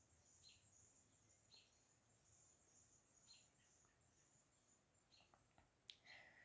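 Near silence: faint room tone with a few short, faint high chirps a second or two apart, like birds heard from far off.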